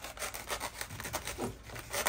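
Stanley utility knife blade sawing back and forth through a foam pool noodle in rapid short strokes; the blade is too short to cut right through.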